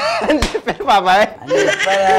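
A man laughing loudly, his voice breaking into short pieces that waver up and down in pitch.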